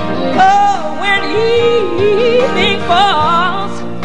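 Gospel song: a woman's voice sings long melismatic runs with vibrato, gliding up and down over held accompaniment chords.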